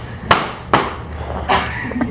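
Nerf foam battle axes striking, three sharp whacks in the first second and a half.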